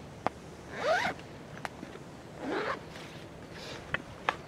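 Zipper of a soft-sided padded gear bag being pulled open in two strokes, each a short zip that rises in pitch, with a few light clicks around them.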